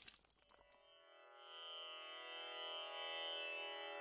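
Background music fading in: after the dying tail of a transition sound effect, a steady sustained drone of many held tones swells in gradually from about a second in, opening an Indian classical-style instrumental piece.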